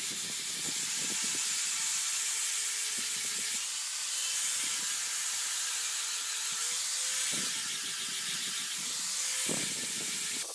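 Angle grinder with an abrasive disc running against the inside of a green stone sink bowl: a steady, loud hiss of disc on stone over the motor's hum. The motor's pitch sags a little about three quarters of the way through, then recovers.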